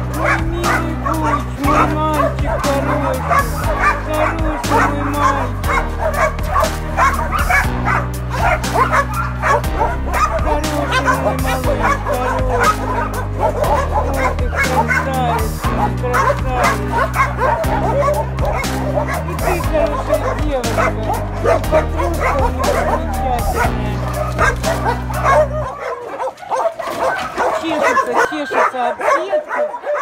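Background music plays until it cuts off suddenly near the end. Through it and after it, dogs whine and yip in wavering, high calls.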